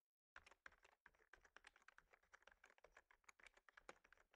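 Faint typing on a computer keyboard: a quick, irregular run of keystroke clicks that starts a moment after a brief dead-silent gap.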